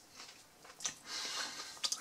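Faint chewing of a mouthful of toasted flatbread döner: soft wet mouth clicks and crackles, with a few sharper clicks near the end.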